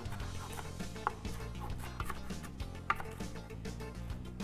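Chef's knife chopping a bunch of fresh parsley and dill on a wooden cutting board: a quick, continuous run of knife taps on the wood.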